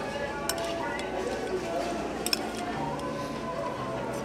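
A metal spoon clinks lightly against a bowl a couple of times while someone eats, over steady background music and murmur.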